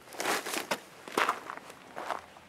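Footsteps crunching on gravel, about three steps.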